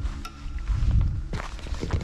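Footsteps crunching on a sandy dirt track: several steps, with a low scuffing sound about a second in.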